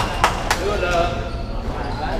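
Sharp knocks echoing in a squash court: three about a quarter second apart at the start, then one more about a second in.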